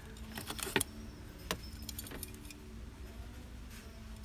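Small hard-plastic LED crystal-tree ornaments clicking and clinking against each other as one is lifted out of a cardboard display box, a cluster of light clicks in the first second and a few single ones later, over a faint steady hum.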